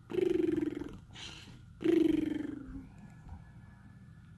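Cartoon snoring sound played through a TV speaker: two long, even snores about two seconds apart, with a breathy in-breath between them, the second snore trailing off with a falling pitch.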